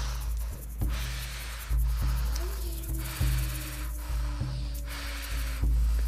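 Rapid, deep breaths in and out in a quick even rhythm, about five full breaths, during a Wim Hof-style hyperventilation round. Ambient background music with a steady low drone plays underneath.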